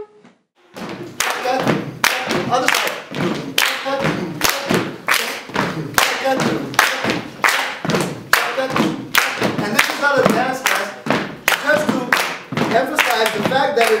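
A group of people clapping out the uneven 11/8 rhythm of a Bulgarian kopanitsa, starting just under a second in, with voices vocalizing along with the beat and a laugh about three seconds in.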